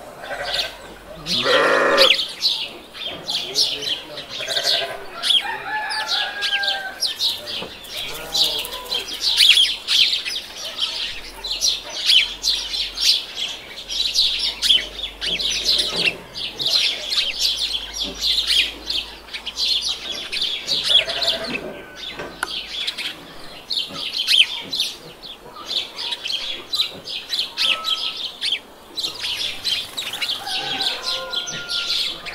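Chickens in a yard: a quick run of high bird chirps goes on throughout, and a louder chicken call cuts in twice, once near the start and again about two-thirds of the way through.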